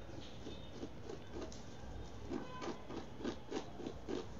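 Fingernail scratching and picking at a DTF transfer print on a T-shirt, its glue weakened with retarder so that the print peels off bit by bit: a faint, irregular run of short scratches, about three a second.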